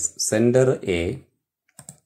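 A man speaking for about a second, then a few faint short clicks near the end.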